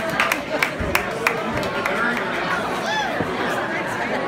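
Club crowd chatter and voices, with several sharp hits in the first second and a half and a rising-and-falling call about three seconds in.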